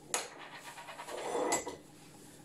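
Audible breathing, with two light clicks of a glass being handled on a kitchen countertop, one just after the start and one about a second and a half in.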